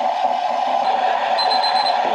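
Espresso machine steam wand hissing steadily as it steams and froths cashew milk in a stainless steel pitcher. About one and a half seconds in, a timer starts beeping rapidly, signalling that the milk has reached its target temperature.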